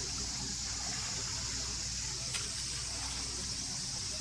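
Steady outdoor ambience: a constant high-pitched insect drone over a low rumble, with one faint click a little past two seconds in.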